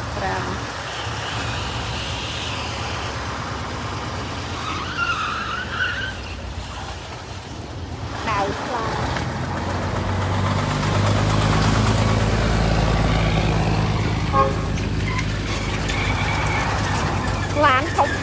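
A vehicle engine idling, a steady low hum that comes up about ten seconds in and holds.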